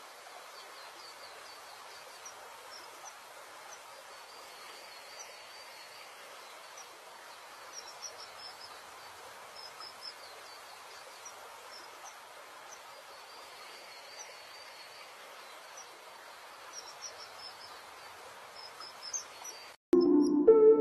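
Faint outdoor ambience: a steady hiss with many short, high bird chirps scattered through it, bunching up about eight and ten seconds in and again near the end.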